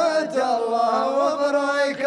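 A man singing a mawwal unaccompanied, holding long drawn-out notes with slow melodic turns.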